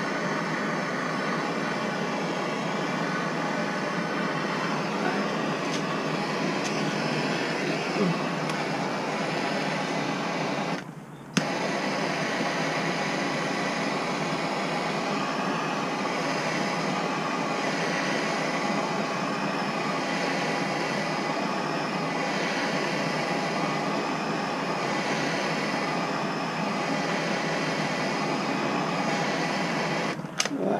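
Gas torch flame hissing steadily as it heats a seized trailer hub so the metal expands and the spindle comes free. About eleven seconds in, the hiss drops out for half a second and comes back with a sharp click.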